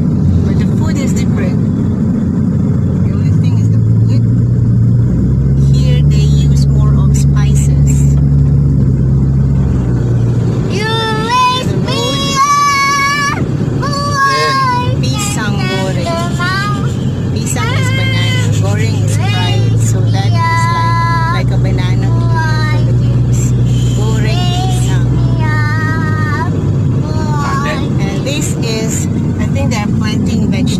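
Inside a moving car: steady engine and tyre noise with a low hum. From about eleven seconds a voice sings a melody over it for some fifteen seconds.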